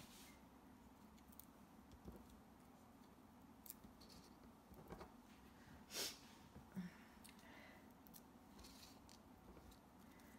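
Near silence with a few faint, brief rustles and clicks of paper and foam-adhesive craft supplies being handled on a cutting mat. The loudest is a short rustle about six seconds in.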